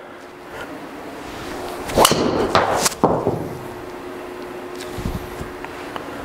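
Three sharp knocks or clacks in quick succession about two seconds in, then a faint steady hum.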